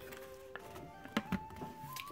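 Quiet background music: a soft melody of held notes. A few short crackles come through it, about half a second and a second and a bit in, from the foil lid being peeled off a paper instant-noodle pot.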